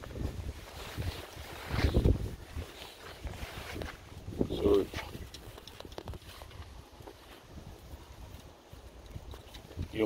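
Low rumble of wind on a phone's microphone outdoors, louder about two seconds in, with a short murmured voice sound about four and a half seconds in.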